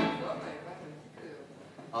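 A stop-time break in a live blues band: the ring of the band's last accented hit dies away and the room goes quiet, then the singer comes back in with a shout right at the end.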